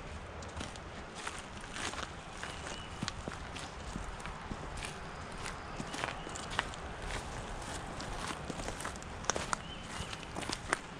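Footsteps of a person walking on a gravel trail strewn with dry leaves, a run of short irregular scuffs and crunches.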